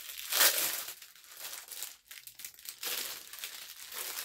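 Plastic packaging crinkling and rustling as an item is handled, loudest about half a second in and picking up again in the last second.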